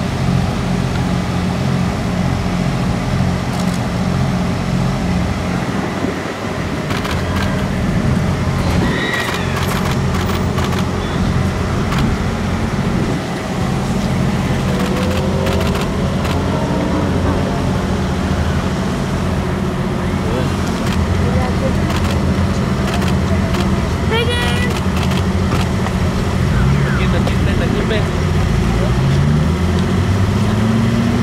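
Steady low engine drone, like a nearby running engine or generator, with indistinct voices over it and a rising whine near the end.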